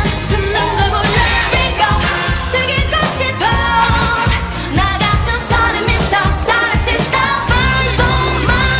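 K-pop song playing loud, with sung vocals over a steady dance beat.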